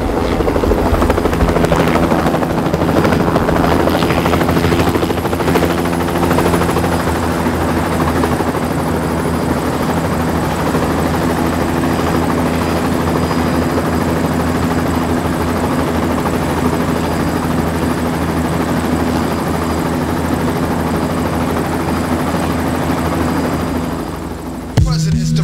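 Helicopter running steadily with its rotor turning: one continuous drone that is a little louder in the first few seconds.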